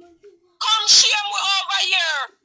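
A woman's voice only: a short low murmur at the start, then loud, high-pitched exclaiming from about half a second in, the pitch sliding up and down.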